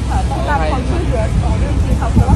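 Speech in Thai at close range, over a steady low rumble.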